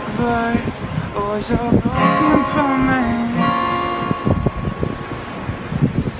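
Acoustic guitar being strummed and picked while a man sings over it, his voice holding one long note in the middle.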